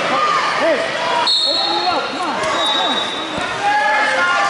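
Wrestling shoes squeaking on the mat: many short squeaks that rise and fall in pitch, over crowd chatter. A brief high steady tone sounds about a third of the way in, and another shorter one soon after.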